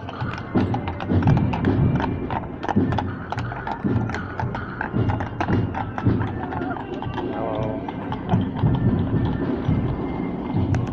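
Hooves of a pair of carriage horses clip-clopping on cobblestones as they walk past, with crowd chatter around them.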